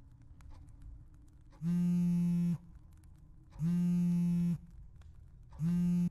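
Cell phone call signal: three identical steady buzzing tones, about a second each and two seconds apart.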